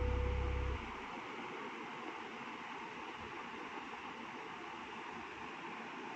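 The last held chord of a background music track dies away about a second in, leaving a steady faint hiss.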